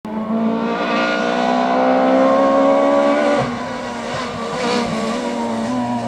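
Rally car engine approaching at high revs, its note held and easing slightly down, then dropping about three and a half seconds in with a few sharp cracks as the driver lifts off, before climbing again near the end.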